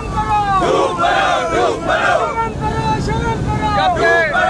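A crowd of protesters shouting together, many loud voices overlapping, over a steady low rumble.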